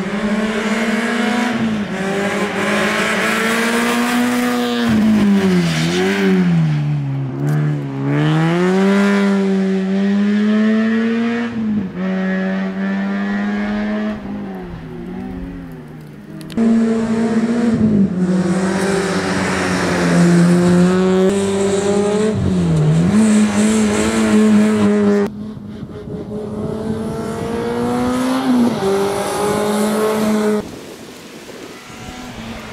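Peugeot 106 rally car's four-cylinder engine revving hard through a cone slalom, its pitch rising and dropping again and again as the driver lifts, brakes and accelerates between the cones. The sound jumps abruptly in loudness a few times as the recording cuts between shots.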